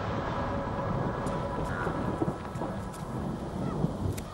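Low rumble of thunder, rolling on without a break.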